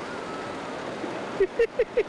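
Steady rush of ocean surf and wind across the microphone, with a person laughing in short bursts over the last half second or so.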